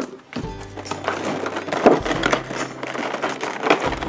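Clear plastic blister packaging crinkling and crackling as it is handled, with many small irregular crackles.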